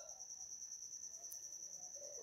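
A faint, steady, high-pitched trill that pulses rapidly without a break.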